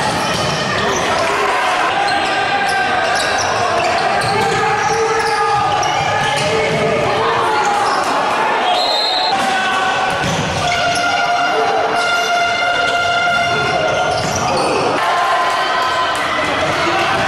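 Live futsal play in an echoing sports hall: the ball thudding off feet and the wooden court while players and spectators call out.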